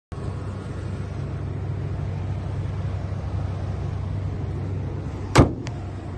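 Volkswagen Touran 1.4 TSI petrol engine idling steadily. About five seconds in the bonnet is shut with one loud bang, followed by a lighter click.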